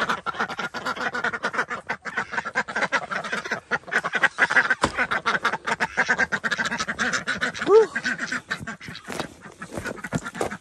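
A flock of domestic ducks quacking and chattering, with rapid clicks and crunches throughout. One louder quack about eight seconds in stands out as the loudest sound.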